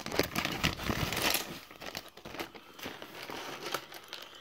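Plastic bag crinkling as it is handled, with light clicks of small plastic toy accessories knocking together; busiest in the first two seconds, then fainter.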